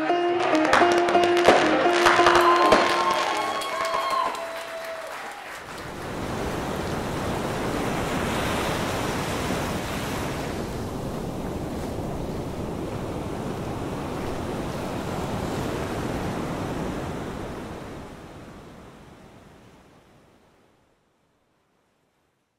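Music ends on a ringing chord over the first few seconds, then the steady wash of ocean surf breaking on a sandy beach takes over and fades out to silence near the end.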